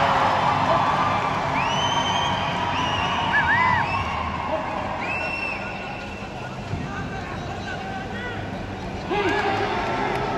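A spectator crowd cheering and shouting, with many short high calls rising over a continuous din. The noise is loudest at the start, eases off over the next several seconds, and swells again near the end.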